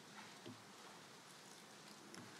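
Near silence, with a faint rustle of thin Bible pages being turned by hand, a couple of soft touches in the first half-second.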